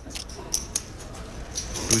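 Poker chips clicking together at the table in a few sharp, bright clicks as stacks are handled and a bet is put in.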